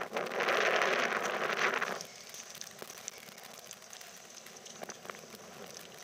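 Splashing of a dog's paws running through shallow water on wet sand: a burst of spray for about the first two seconds, then only faint scattered pattering.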